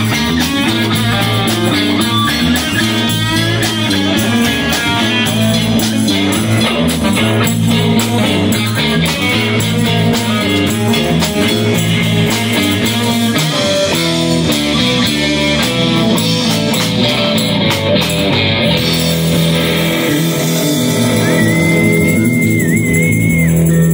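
Live rock band playing: electric guitars, bass guitar and a drum kit.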